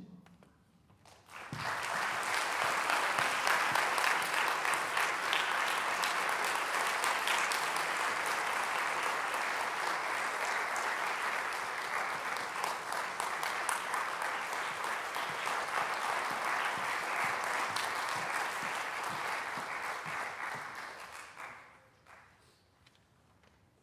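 Audience applauding: the clapping starts about a second and a half in, runs on steadily, and dies away near the end.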